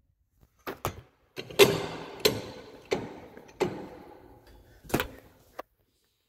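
A string of sharp knocks and clunks, several about two-thirds of a second apart, each with a short echo, then two more near the end.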